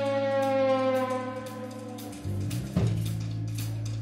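Live band music: a long held horn note slides slowly down in pitch and fades out about halfway through, over a sustained bass note and light cymbal strokes. The bass then moves to a new note and a drum hit lands a little later.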